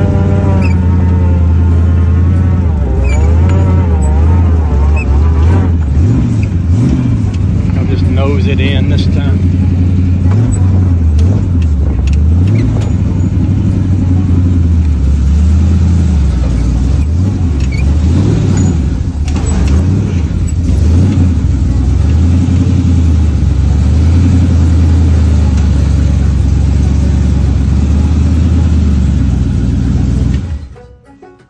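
Rat rod's engine running at low road speed with a low note, the revs rising and falling several times as it is driven slowly.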